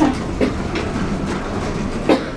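Elevator car's sliding stainless steel doors opening: a steady rumble of the doors running along their track, with a click as they start to move.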